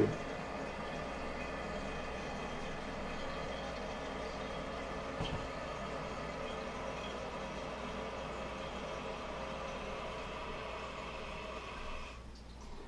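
Old ballcock fill valve in a toilet tank hissing steadily as water runs in to refill the tank after a flush, with its float arm bent down to lower the shut-off level. The hiss eases off at the very end as the valve closes.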